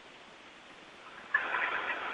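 Low hiss on a space-to-ground radio link. About a second in, a louder rush of static cuts in suddenly and holds steady as the channel opens.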